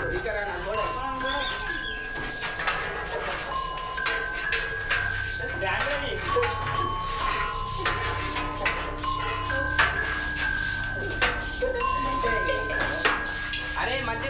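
Background music: a slow, repeating melody of high held notes over a low drone that swells about four seconds in, with scattered sharp clicks.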